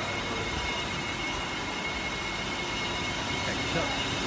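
Steady background noise of a busy covered fish market: an even din with a constant thin, high machine whine running through it. A man's voice begins near the end.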